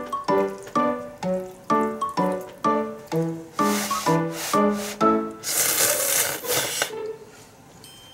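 Piano background music with a note about every half second. Between about three and a half and seven seconds in, ramen noodles are slurped loudly over it: a few short slurps, then one long one.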